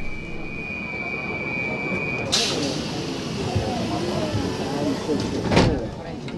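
Metro train at a station platform: a steady high warning tone for about two seconds, then a sudden loud hiss as the doors work. Faint voices follow, and a second loud burst comes near the end.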